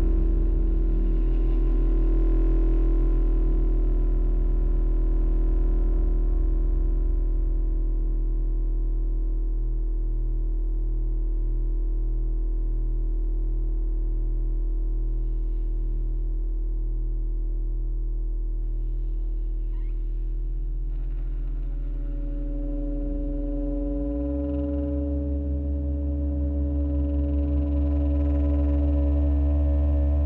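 Freely improvised electro-acoustic drone music: bowed double bass, saxophone and Moog Etherwave theremin with modular synthesizer hold long, low sustained tones that beat slowly against each other. About 22 seconds in a new, higher tone enters and the lowest note steps up, and near the end a wavering vibrato tone joins.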